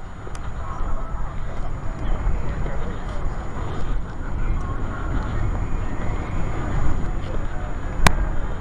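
Outdoor crowd background: people talking among themselves over a loud, uneven low rumble.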